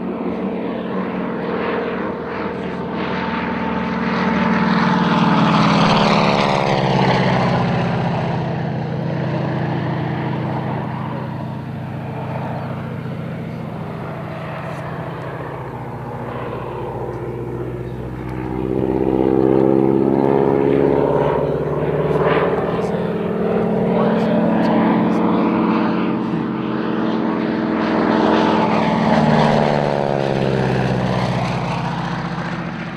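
A de Havilland Canada DHC-2 Beaver's Pratt & Whitney R-985 Wasp Junior nine-cylinder radial engine and propeller during low flypasts. The engine note swells and drops in pitch as the aircraft passes, loudest at about six seconds in, again at about twenty seconds, and near the end.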